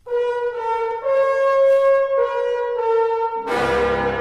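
Music: a solo brass instrument, such as a horn, plays a slow melody in held notes. A fuller band comes in near the end.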